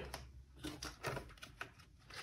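Faint, irregular clicks and taps from a clear plastic ring binder and its paper inserts being handled and opened flat on a tabletop.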